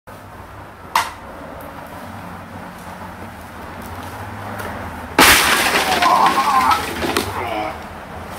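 A person crashing into a white plastic table set with plastic cups, about five seconds in: a sudden loud crash and clatter as the table goes over and the cups scatter, followed by shouting. A single sharp click comes about a second in.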